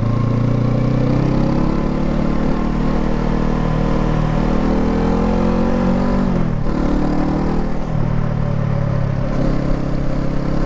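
Honda CL500's 471 cc parallel-twin engine pulling the bike along, its pitch climbing for several seconds under acceleration, then dropping sharply about six and a half seconds in at an upshift and running on steadier.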